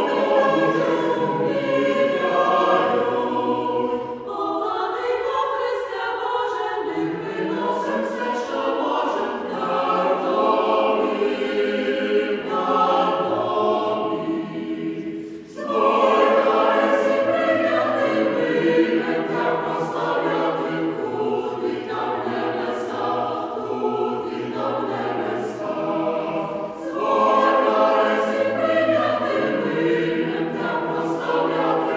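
Choir singing a Ukrainian Christmas carol (koliadka), several voice parts in harmony, with a short break between phrases about halfway through.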